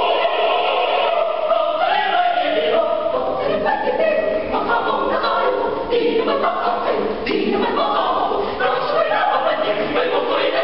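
Mixed choir singing a cappella in several parts, men's and women's voices together, with the chords shifting every second or so.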